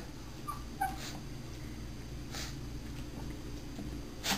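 A small dog gives a couple of faint, short, high whimpers about half a second in, straining to speak on command. A few soft breathy huffs follow over a low steady room hum.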